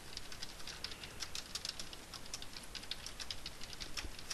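Typing on a computer keyboard: a quick, uneven run of fairly quiet key clicks as a line of code is entered.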